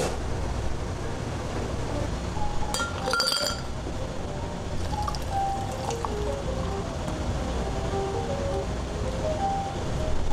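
Background music with a glass clinking once, a short ringing chink about three seconds in, over a low steady rumble.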